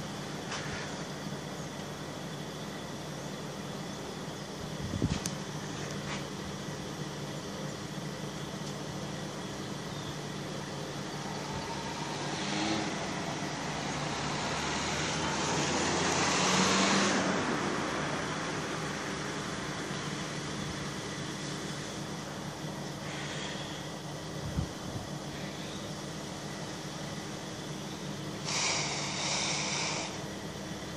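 Quiet street ambience with a steady low hum, and a car passing on the road below that swells and fades over several seconds in the middle. A couple of short knocks and a brief hiss near the end.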